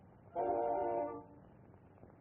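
A single held, horn-like chord of several steady tones, just under a second long, starting about a third of a second in, from an early-sound-era cartoon soundtrack.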